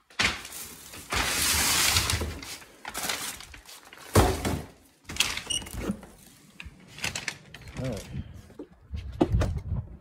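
A front door being opened and passed through: a rushing scrape about a second in and one sharp knock just after four seconds in, among handling noise.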